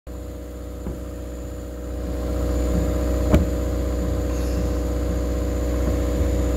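An engine running steadily, a low hum that grows louder about two seconds in. A sharp knock comes about halfway through, with a fainter tap about a second in.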